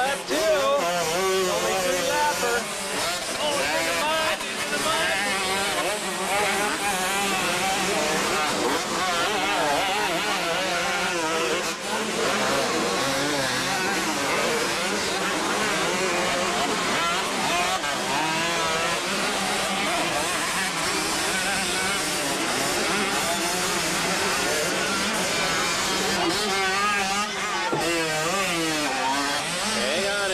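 Several motocross bikes racing on a dirt track, their engines revving up and down with a constantly wavering pitch as they pass, corner and jump.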